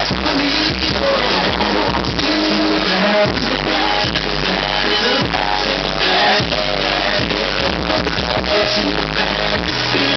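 A hip-hop track with vocals playing back loudly over studio monitor speakers, a steady beat throughout.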